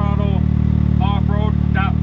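Can-Am Maverick X3 turbo side-by-side idling steadily, a low even engine note that holds one pitch throughout.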